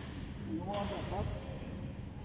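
Brief, indistinct speech from a person's voice, over an even hiss of noise that starts about a third of the way in.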